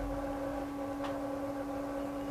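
Faint steady hum with one constant tone.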